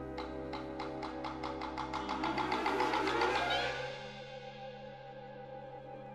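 High school wind band and percussion ensemble playing a contemporary concert piece: a held low chord under fast, evenly repeated high percussion strikes that grow louder, then die away about four seconds in, leaving a quieter sustained chord.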